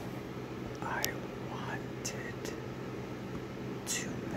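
A man's very slow whispering, each syllable drawn out, broken by a few sharp clicks, over a steady low background hum.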